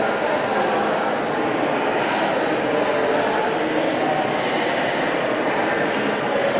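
Crowd babble: many people in the audience talking at once in pairs or small groups, a steady overlapping hum of conversation with no single voice standing out.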